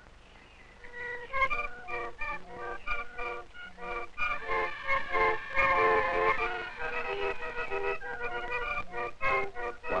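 Barrel organ (organ grinder's hand organ) playing a lively tune of quick, short notes, starting about a second in.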